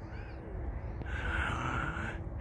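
A toddler's high voice calling faintly in the distance: a short gliding sound early, then a longer held call about halfway through, over a low rumble.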